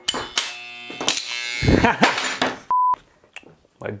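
Homemade mains-powered electromagnet, a coil on a laminated iron core, buzzing loudly as its core vibrates under the alternating current, with crackling bursts. About three quarters of the way in, a short single-pitch bleep cuts in over silence, the kind used to censor a swear word.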